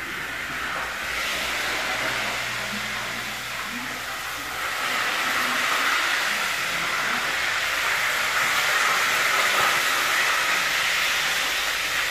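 Linguiça sausage frying in a pan on a gas stove, a steady sizzling hiss that grows louder over the first few seconds. The pan has nearly dried out and the sausage is starting to burn.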